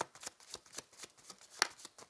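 A deck of oracle cards being shuffled by hand: a quick run of soft card flicks, several a second, with one louder snap near the end.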